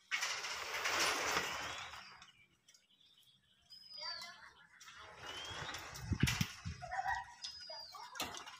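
A metal gate swung open with a noisy scrape and rattle for about two seconds, then a bird repeating a short, high whistled note every few seconds, with chickens clucking.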